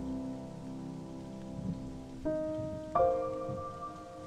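Slow solo piano music over a bed of steady rain falling on a hard surface: a held chord fades away, then new notes are struck about two seconds in and again about three seconds in.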